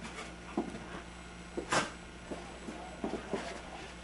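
A dog playing and rolling about on a carpet, making scattered short noises, with one louder, brief sound just under two seconds in.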